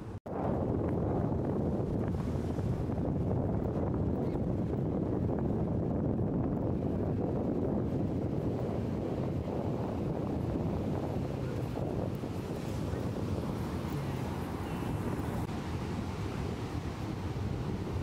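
Steady wind rumbling on the microphone over the continuous wash of ocean surf breaking on a sandy beach.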